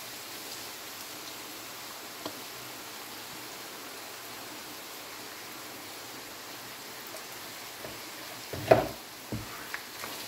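Spaghetti in tomato sauce sizzling gently in a frying pan, a soft, even hiss. Near the end comes a loud knock, then a softer one.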